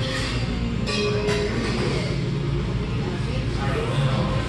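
Restaurant background: other diners' chatter over a steady low rumble, with a couple of short clinks about a second in.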